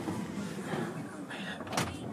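Inside a moving bus: steady engine and road rumble, with a brief sharp knock near the end.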